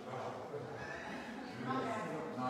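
Indistinct voices of other people talking in the background, no words clear.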